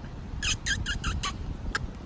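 A quick run of about five squeaky kissing sounds made with the lips to call dogs, lasting under a second, followed by a single click.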